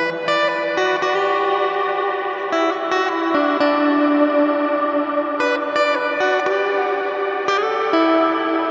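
Background music: electric guitar played through effects, picked notes and chords ringing on with echo and reverb, a fresh pluck every second or so.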